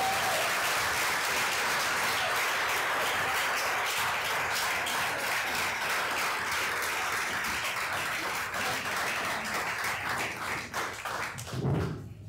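Audience applauding, a dense steady clapping that thins to scattered claps near the end, followed by a short low thump.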